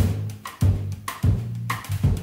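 Jazz organ-trio music with the tenor saxophone resting: a run of drum-kit hits, roughly two a second, over the Hammond organ's sustained low bass notes.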